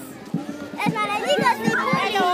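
A group of young children chattering and calling out over one another in high voices, with a regular low beat underneath.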